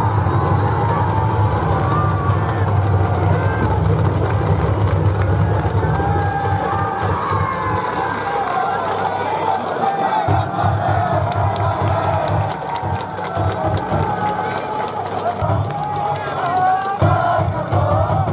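Crowd in the stands cheering and chanting over band music, steady throughout, as the batting team's supporters celebrate a base hit.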